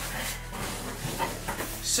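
Cardboard handling: a cardboard shoebox drawn out of a cardboard shipping box and set down, rustling and scraping with a few soft knocks.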